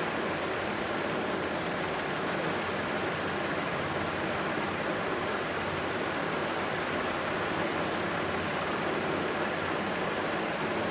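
Steady, unbroken rushing noise of the room's background, even in level throughout, with no speech.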